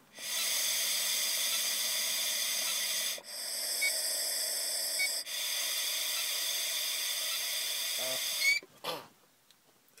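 A long, steady breath blown through the blow tube of an Intoxalock ignition interlock breathalyzer, giving a sample for a breath-alcohol test. The hiss breaks very briefly twice, about three and five seconds in, and stops about eight and a half seconds in.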